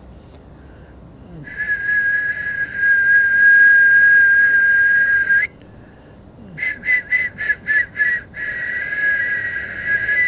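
A high whistling tone held at one steady pitch for about four seconds, then a quick run of about six short pips, then held steady again near the end.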